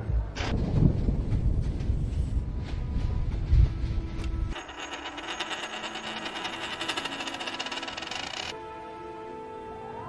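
A low, rumbling film score with a few deep hits, then a metal ring spinning and rattling on a hard surface for about four seconds. The rattling cuts off into sustained musical tones.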